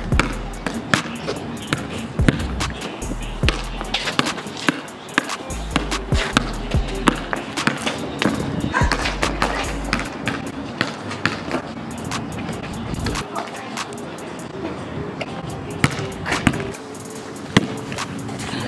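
Basketball dribbled and bouncing on a concrete court, a string of sharp knocks all through. Background music with a deep bass runs underneath.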